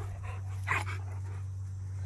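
Dog panting, with one short breath standing out about two-thirds of a second in, over a steady low hum.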